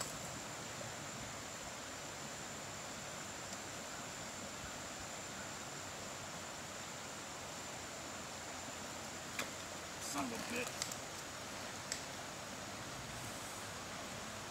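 Quiet, steady outdoor background hiss with a faint high-pitched whine running through it. A few faint clicks and rustles come around ten seconds in.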